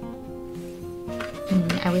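Soft background music, with steady held notes; a woman's voice comes in near the end.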